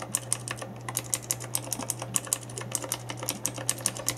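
Razer Green clicky mechanical key switches in a keyboard box's sample window being pressed rapidly by fingers: a fast, uneven run of sharp key clicks, several a second, a click like that of Cherry MX Blue switches.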